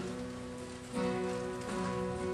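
Acoustic guitar playing an intro, with sustained chords and a new chord strummed about a second in.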